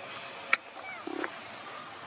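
River water flowing steadily, with one sharp click about half a second in and a few short, high, gliding chirps just after it.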